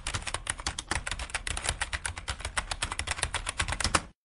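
Fast computer keyboard typing: a rapid, even run of key clicks, about ten a second, that starts and stops abruptly.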